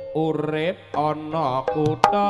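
Javanese gamelan music for a jaranan show, with a singer's line that glides and bends in pitch over steady instrument tones.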